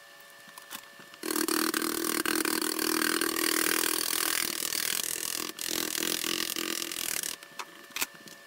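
Battery-powered caulking gun's motor running for about six seconds as it pushes adhesive out of a tube, starting about a second in and cutting off suddenly near the end, with one brief dip partway through.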